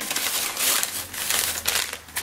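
Paper bag crinkling as it is handled, with a busy run of small crinkles and rustles.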